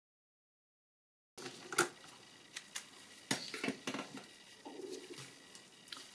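Complete silence for over a second, then light, irregular clicks and knocks of hands handling a plastic car instrument cluster and a screwdriver on a countertop, the sharpest knocks a little under two seconds in and just past three seconds.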